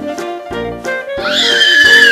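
A toddler's high-pitched squeal, rising, held for about a second and falling away in the second half, over jazzy background music with saxophone.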